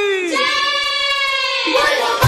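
A high sung note that slides down and is then held for over a second, in the opening of a Bhojpuri kanwar devotional song.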